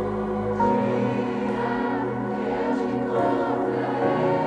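Live worship band music: sustained keyboard and electric guitar chords, changing to a new chord about half a second in.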